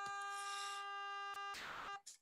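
A 400 Hz sawtooth wave from a Faust oscillator (os.sawtooth(400)) sounding as one steady pitched tone rich in overtones. A brief hiss comes near the end, then the tone cuts off abruptly as the DSP is stopped.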